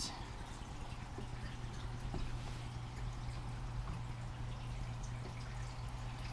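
Steady trickle and splash of water circulating in a large reef aquarium, over a constant low hum.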